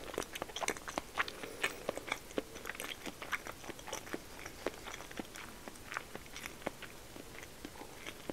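Close-miked mouth chewing a mouthful of soft-boiled egg: a quick run of wet clicks and smacks, busiest in the first few seconds and thinning out towards the end.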